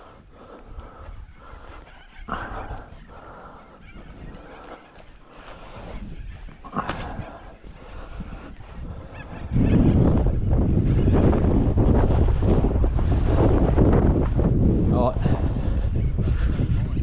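A few faint short calls in the first half, then wind buffeting the microphone, loud and rumbling, from about ten seconds in.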